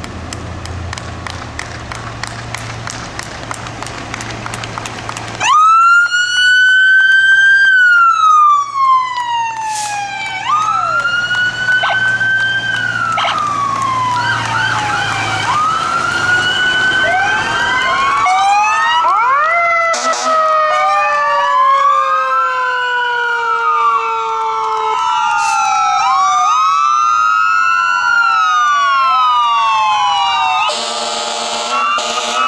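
A low vehicle engine rumble, then about five seconds in a loud emergency-vehicle siren starts on a wail that sweeps up and down. From a little past the middle, several sirens from passing fire engines and police vehicles sound together, their sweeps overlapping out of step.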